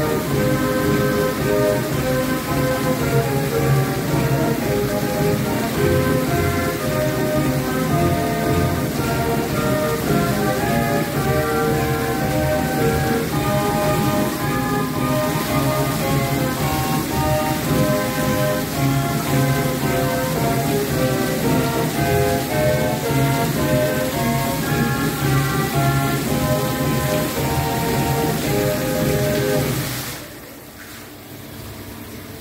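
Splashing hiss of fountain jets falling onto water, with music playing over it as the show's accompaniment, the notes changing in a steady melody.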